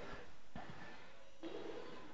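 Quiet hall room tone: a low steady background hiss, with a faint click about half a second in and a brief faint murmur near the end.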